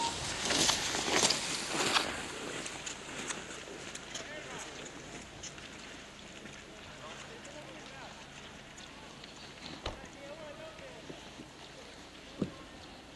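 A cross-country skier skate-skiing past close by: skis scraping and poles planting on packed snow, a few sharp strokes in the first two seconds that fade as the skier moves away. Faint distant voices follow.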